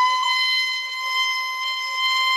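A violin bowing one long, high note on the E string, the first finger sliding slowly up into fifth position so the pitch creeps gradually higher before it settles.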